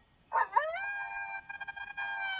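A single long wolf howl that swoops up quickly about half a second in, then holds one steady high pitch.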